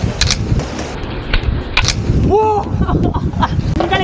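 A handboard's deck and wheels clacking sharply against a stone ledge during a flip trick: three quick knocks in the first two seconds.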